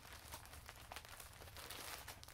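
Faint crinkling of a clear plastic bag holding hanks of yarn as it is handled and lifted, with a few sharper crackles.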